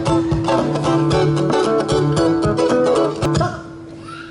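Guitar strummed in a steady rhythm, stopping abruptly about three and a half seconds in, with a faint steady tone lingering after. This is freeze-game music, and its stop is the cue for the children to stand still as statues.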